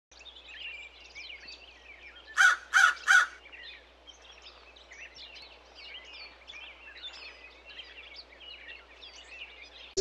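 A crow calls three times in quick succession about two and a half seconds in, over a continuous background of small birds chirping.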